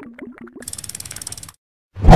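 Animated end-screen sound effects: a few short pitched blips, then a rapid run of ratchet-like clicks, about fifteen a second, lasting about a second as the title card wipes to the next one.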